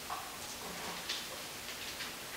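Quiet room tone with a few faint, short ticks, about one every half second.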